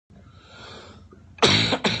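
A man's loud, abrupt vocal outburst, a longer burst then a short second one, about one and a half seconds in, after faint background hiss.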